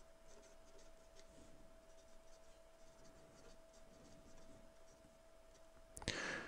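Faint scratching of a pen tip on paper, in many short strokes, as two words are handwritten.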